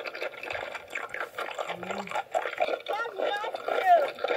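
Quiet, indistinct children's voices, with a short low hum about two seconds in and a clearer bit of a child's voice near the end.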